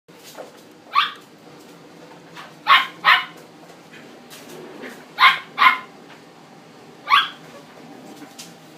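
A Chihuahua puppy barking with six short, high barks: one, then two quick pairs, then one more near the end.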